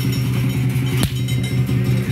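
Lion dance percussion: a large Chinese drum beaten in a fast, dense roll with cymbals ringing over it, and one sharp hit about a second in.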